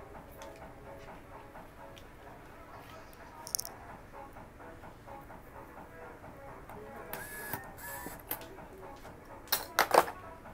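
Low background music with scattered light clicks. About seven seconds in come two short bursts of whirring, rustling noise, and just before the end a few sharp clicks.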